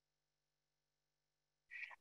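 Near silence: room tone, with a faint breath near the end.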